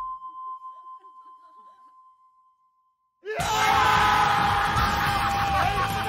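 A steady high electronic tone fades away over about three seconds. Then, suddenly, a group of men break into screaming and cheering over music at the solving of the puzzle.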